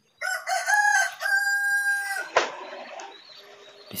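A rooster crowing once, a call of about two seconds ending in a long held note, followed by a short knock.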